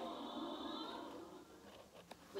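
Sitcom audio from a TV across the room, fading away over the first second and a half to a low murmur.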